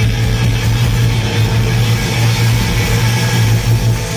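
Live rock band playing loud and distorted: a steady, droning low bass note under a dense wash of distorted electric guitars and cymbals, heard from within the crowd in a small club.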